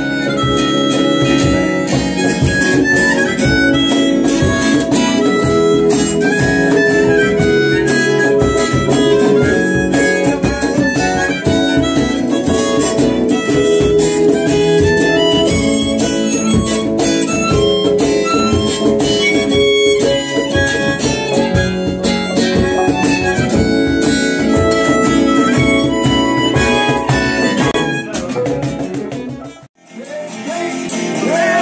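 Live harmonica solo played into a handheld microphone, a changing melody line over steady electric keyboard chords. The music cuts off abruptly just before the end.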